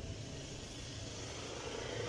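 Steady low background noise with no distinct event: ambient room or outdoor hum and hiss.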